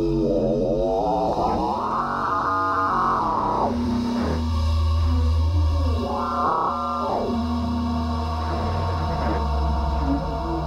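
Electronic ambient music: synthesizer tones sweep up and back down in pitch in long arcs, over a deep sustained bass drone that comes in about four seconds in.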